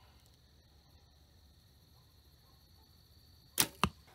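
Compound bow being shot: a quiet hold at full draw, then the sharp snap of the string's release about three and a half seconds in. A second, smaller crack follows about a quarter second later, the arrow striking the target.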